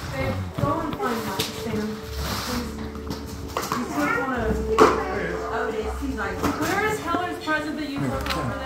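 Indistinct talk from people in the room, with music playing underneath.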